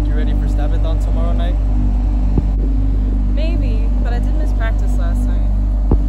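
People talking in short stretches over a steady, low ambient music drone, with brief thumps about two and a half seconds in and at the very end.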